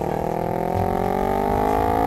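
Motorcycle engine sound revving up, its pitch rising steadily as the bike pulls away.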